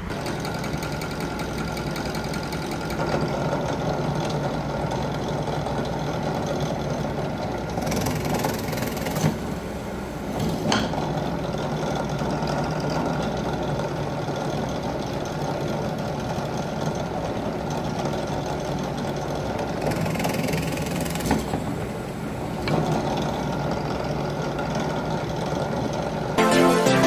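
Benchtop drill press motor running steadily while a twist bit drills holes through a wooden board. There are brief harsher stretches about 8 and 20 seconds in, and a single click between them.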